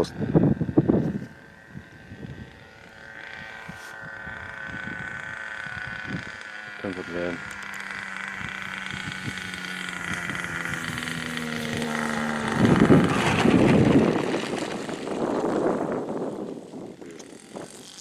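Small 10 cc petrol engine of a radio-controlled model plane running at raised idle as it glides in to land, its steady hum slowly growing louder and rising a little in pitch as it approaches. About two-thirds of the way through there is a louder, noisier rush for a couple of seconds as the plane passes low and close, then it fades.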